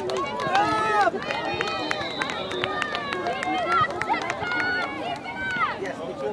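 Overlapping voices of players and spectators calling out across a youth soccer field, with loud high-pitched shouts about half a second in and again near the end.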